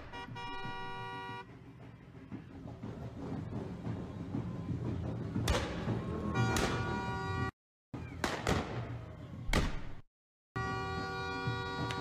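Phone recording of a street wedding celebration: crowd noise with steady held tones that come and go, and about four sharp bangs in the middle. The sound cuts out completely twice, briefly, where the phone clip is spliced.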